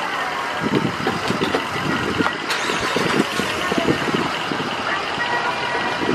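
Steady vehicle engine and traffic noise, with irregular low rumbling throughout.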